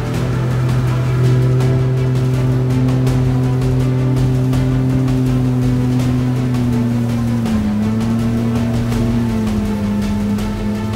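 Jet boat engine running at high, steady revs as the skiff runs on plane through rapids, its pitch dipping briefly about three-quarters of the way through. Music plays over it.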